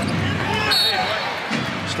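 Basketball arena game sound: a steady crowd murmur with a brief high-pitched squeak just under a second in.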